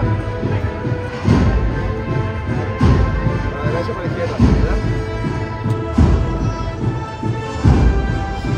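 Processional march played by a band, with sustained brass-like chords and a heavy drum beat about every second and a half.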